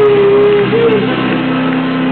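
Live band playing electric blues-rock, loud, with an electric guitar bending up into a note and holding it for about half a second, then bending another, over the band.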